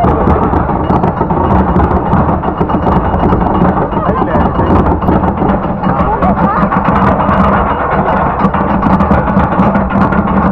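Roller coaster train climbing its lift hill: a steady, loud rumble and clatter of the cars on the track, with riders' voices mixed in.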